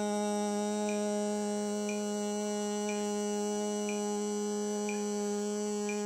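A Carnatic singing exercise: a voice holds the note Sa on one unwavering pitch, a long sustained note used to build breath capacity. A faint tick sounds about once a second behind it.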